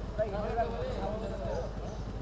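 Several voices talking over a steady low background rumble.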